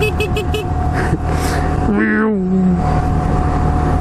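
Honda Grom's 125 cc single-cylinder engine running as the bike is ridden slowly, steady throughout, with a falling pitch about two seconds in.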